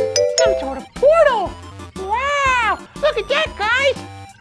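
A cartoonish puppet voice making wordless exclamations that swoop up and fall back down, like "ooh" and "whoa": one about a second in, a longer one past the middle, then a quick run of shorter ones near the end. Background children's music with a steady beat plays under them.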